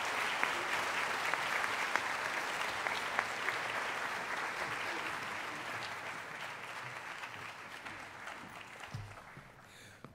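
A large audience applauding: dense, even clapping that gradually fades away over the last few seconds.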